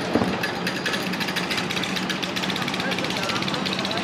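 An engine running steadily, with a constant low hum and a fast, even chatter, and faint voices behind it.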